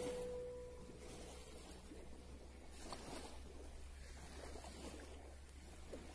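Background music fading out in the first second, then faint seaside ambience: a steady low rumble of wind on the microphone under a soft wash of the calm sea.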